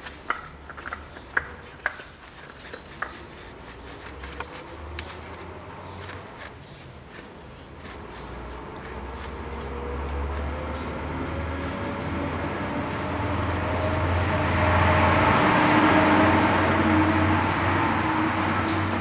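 A few light clicks as the new oil filter is screwed on by hand, then a droning hum from an unseen machine that slowly rises in pitch and grows louder, loudest near the end.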